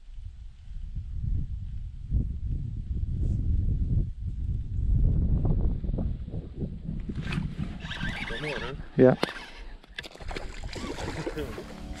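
Wind buffeting the microphone of a chest-mounted camera: an uneven low rumble with no clear tone, easing off about seven seconds in as other, higher handling noise takes over.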